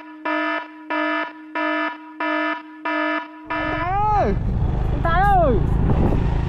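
An electronic warning beep sounds about six times in an even rhythm, roughly one and a half beeps a second. It then gives way to a motorcycle engine running, and a man calls out twice over the engine.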